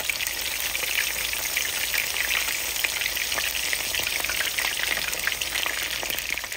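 Beer-battered shrimp deep-frying in hot oil: a steady sizzle with dense, fine crackling.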